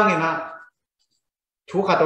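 A man speaking: a phrase trails off, then about a second of silence, then he speaks again.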